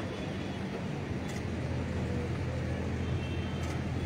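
Steady outdoor background noise with a low, even hum, like traffic or an idling engine nearby.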